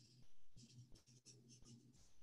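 Near silence with faint, irregular scratching, like a pen writing on paper, over a low steady hum.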